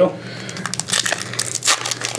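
Trading cards and their pack wrappers being handled: papery rustling and crinkling with a few sharp ticks about a second in and again near the end.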